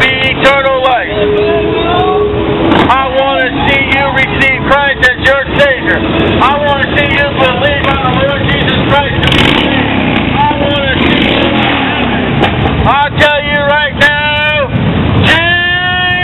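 Motorcycles and cars passing along a street, their engines running under a preacher's loud voice, which goes on almost without a break.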